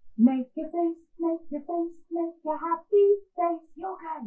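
A woman singing a simple children's song unaccompanied: a string of short, evenly paced notes, mostly on one or two pitches, with a higher note about three seconds in.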